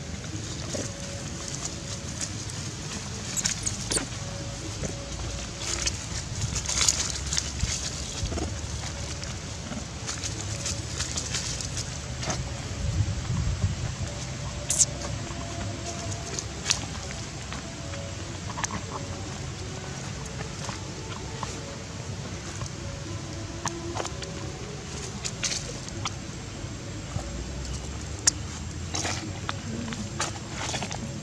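Outdoor ambience: a steady low rumble of wind on the microphone, with scattered light clicks and rustles and faint tonal sounds in the background.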